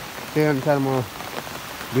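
Steady rain, with scattered drops ticking on surfaces close by.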